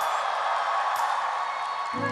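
Live audience in a large hall: a steady wash of applause and crowd noise as a performance is about to begin.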